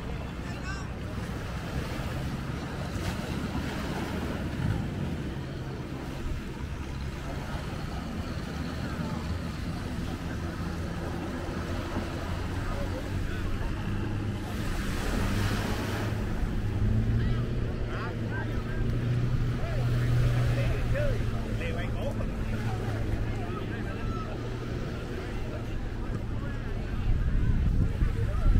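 Beach ambience: a boat engine runs offshore as a low, steady hum that grows louder past the middle and eases near the end. Under it are the wash of surf, wind on the microphone and scattered distant voices.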